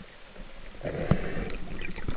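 Underwater noise on the camera housing of a speargun moving through the water: a faint hiss, then from just under a second in a louder rushing sound with scattered sharp clicks and knocks.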